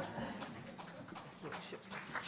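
Quiet hall with a few scattered light taps and knocks and faint murmured voices.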